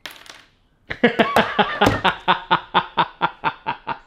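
A man laughing hard in a fast run of short bursts, several a second, starting about a second in and going on without a break.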